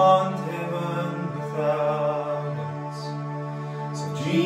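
A man singing long held notes over sustained keyboard chords in a slow worship song, with a steady low bass note underneath.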